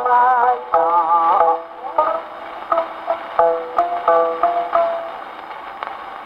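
Taishō-era acoustically recorded 78 rpm shellac disc of ukiyobushi playing on a Victrola acoustic phonograph, under steady surface hiss. A geisha's sung phrase ends about a second and a half in, then a few plucked shamisen notes follow, and near the end the music stops, leaving only record surface noise.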